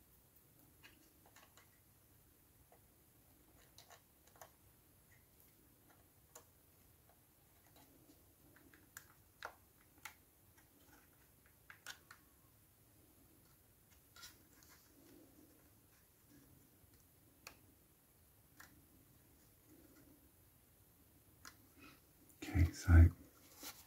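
Near silence broken by faint, irregular small clicks and taps of a plastic model kit being handled and its parts pressed into place by hand.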